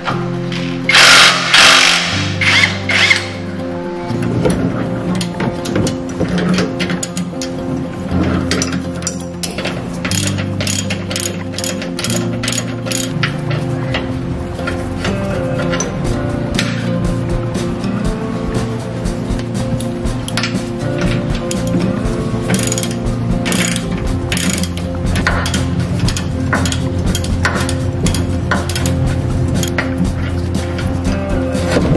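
Cordless impact wrench hammering in a loud burst of about two seconds, a second in, undoing a stabilizer link nut on the front suspension. After it come repeated irregular mechanical clicks of hand-tool work on the stabilizer bar, over steady background music.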